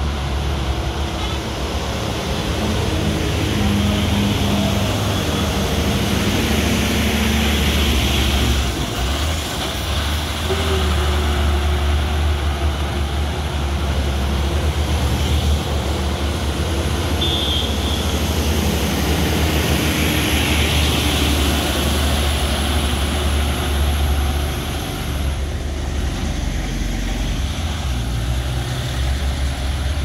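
Road traffic passing close by: heavy trucks, among them a fuel tanker, go by with their engines running, then a motorcycle and a minivan. There is a steady low rumble throughout.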